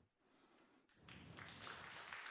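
Near silence, then faint audience applause that starts about a second in and builds a little.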